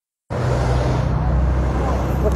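The sound cuts out completely for a moment, then comes back as a steady low engine hum of a motor vehicle running close by, over street traffic noise.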